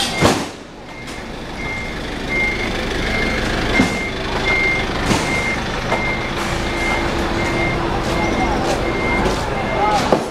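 A vehicle's reversing alarm beeping, one short high beep roughly every 0.6 seconds, over steady street noise. A few sharp knocks cut in, the loudest about a quarter second in.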